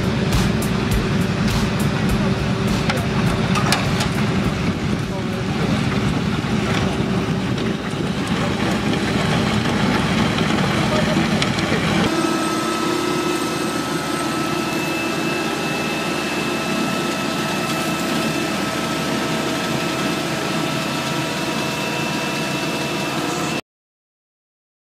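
Road machinery running in two clips. First a hand-pushed road-marking machine gives a steady, noisy rumble. From about halfway, a roadside mowing truck runs with a steady whine over its engine. The sound cuts off abruptly just before the end.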